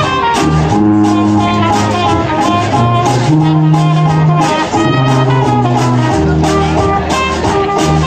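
Traditional New Orleans jazz band playing live: cornet, clarinet and trombone lines over sousaphone, banjo, guitars and washboard. Long held low notes sit under a steady, even beat.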